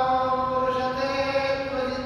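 A man's voice chanting a devotional verse in long, held notes with little change in pitch.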